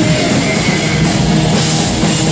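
Live rock band playing loudly: electric bass guitar and drum kit in a dense full-band passage.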